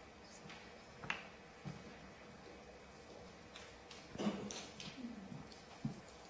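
Quiet snooker arena: a sharp click about a second in as a cue tip strikes the cue ball, then a softer click. A faint murmur of voices in the crowd follows later, and another click comes near the end.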